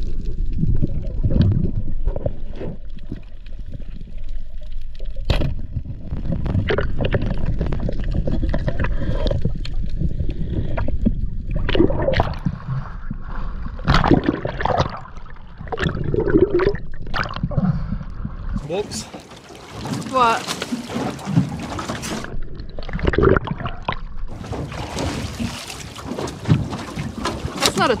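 Muffled underwater rumble and knocks from a freediver's camera during a spearfishing dive. About two-thirds of the way through the rumble drops away as the diver surfaces, and near the end there is splashing water alongside the boat.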